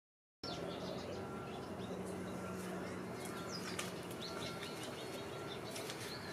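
Small birds chirping intermittently in the background, short high chirps over a faint steady hum.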